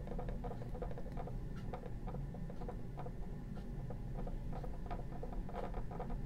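Oil paint being mixed on a palette: light, irregular clicks and scrapes of a palette knife or brush working the white paint.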